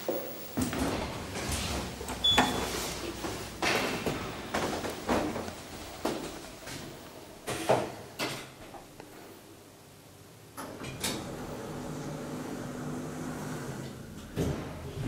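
Elevator doors opening and closing on an old ASEA traction elevator: a run of sliding rumbles, clicks and clunks, with a short high beep about two seconds in. A steady low hum follows in the last few seconds.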